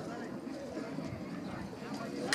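Horses' hooves clopping and shuffling on dirt as the horses are held in the starting gates before a race, under the voices of people talking.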